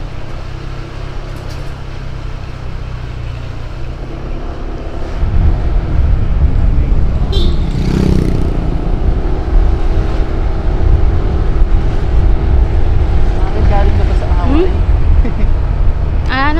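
Motorcycle running along city streets, with wind noise on the camera's microphone. The noise gets much louder about five seconds in as the bike picks up speed, and faint steady engine tones run underneath.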